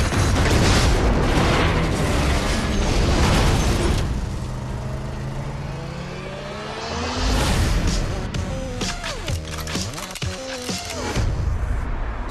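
Action-trailer sound mix: a loud explosion rumbles for the first four seconds as a fuel tanker blows up, under a music score. The score then carries on with held low tones, another loud hit about seven seconds in, and sweeping pitch glides near the end.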